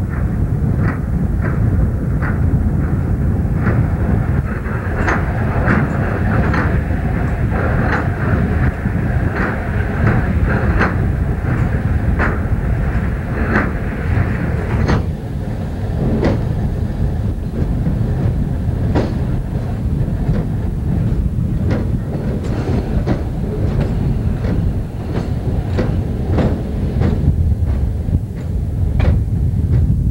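Hi-rail truck running along railway track: a steady low rumble with a sharp click about every second as its rail wheels pass over the rail joints. A brighter hiss over the rumble drops away about halfway through.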